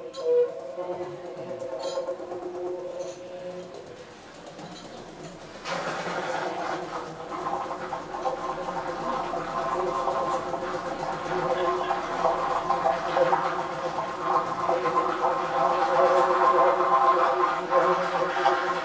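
Solo alto saxophone in free improvisation: soft held notes, a quieter dip around four seconds in, then from about six seconds a sudden dense sound of several tones at once that swells louder toward the end.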